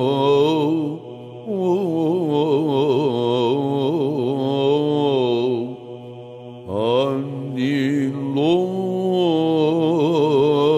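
Byzantine chant in the plagal fourth mode: a male chanter sings a slow, ornamented melismatic line over a steady held drone note (ison). There are short breaks about a second in and near six seconds, and a new phrase starts with an upward slide about seven seconds in.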